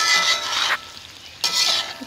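A spatula stirring thick egusi vegetable soup in a metal pot: two scraping, squelching strokes, one at the start and a shorter one about a second and a half in.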